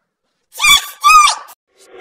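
A man's shouted motivational words pitched up and sped up with a chipmunk voice effect: two short high-pitched shouts, starting about half a second in.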